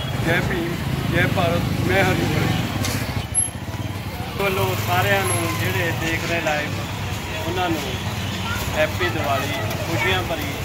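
A man speaking over street noise, with a vehicle engine running underneath.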